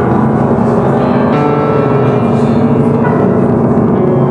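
Upright piano playing a slow accompaniment: held chords, with new chords struck about a second in and again near three seconds.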